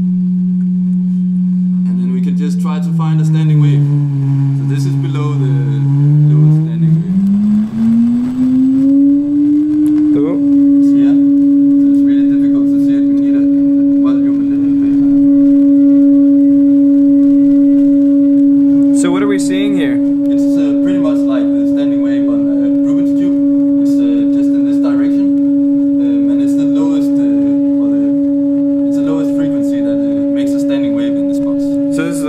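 A pure test tone played through the pyro board's loudspeaker. It starts low, steps down lower, glides up between about 7 and 10 seconds in, then settles on a steady higher tone with a fainter octave above it for the rest of the time. The held tone is the board's fundamental standing-wave resonance.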